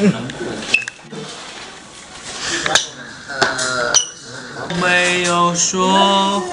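Young male voices talking in a room, with a few sharp clicks; near the end a voice sings two long held notes.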